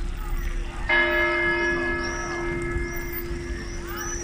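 A church tower bell is struck once about a second in and rings on, its overtones slowly fading over the low hum of a still-sounding earlier stroke. Birds chirp high above it.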